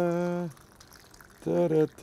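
A man singing wordless held notes, one ending about half a second in and two more near the end, with a quiet gap between them. Under the voice, coffee pours faintly from an insulated jug into a cup.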